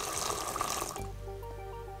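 Water running from a single-lever kitchen mixer tap into a stainless steel sink, a steady rush that cuts off about a second in. Soft background music with held tones runs underneath.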